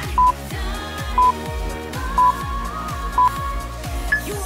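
Background music with a steady kick-drum beat, over which four short electronic beeps sound one second apart: a countdown timer marking the last seconds of an exercise.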